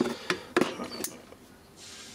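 Tools and metal aerosol cans being handled and knocked together: a few sharp clicks and knocks in the first second, then a faint hiss near the end.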